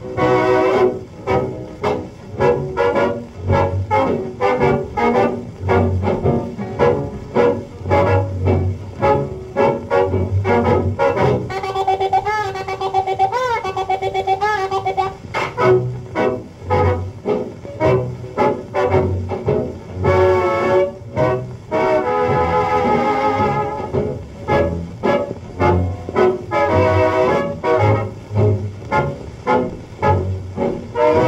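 A 1935 shellac 78 rpm record playing a dance band in a slow blues fox trot: brass led by a muted trumpet over a steady beat, with long held notes whose pitch wavers about twelve seconds in and again near twenty.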